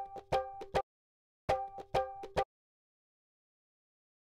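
A short drum sample previewed from a phone music app: a quick run of pitched, ringing hand-drum strokes, heard twice about a second and a half apart.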